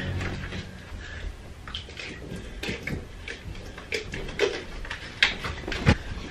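Scattered light knocks, clicks and rustles of someone moving about a small room and handling things, with no clear voice.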